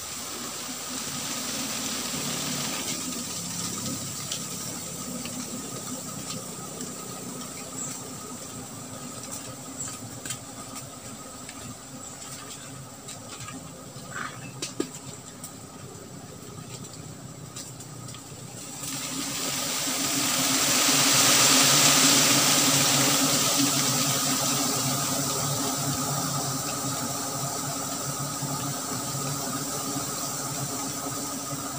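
A swarm of giant honey bees (Apis dorsata) buzzing in a steady, loud hum around their nest as smoke drives them off the comb. The buzz swells and grows hissier a little past halfway, then eases slightly.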